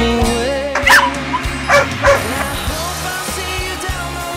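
A dog barking and yipping, three short barks about a second apart, over background music.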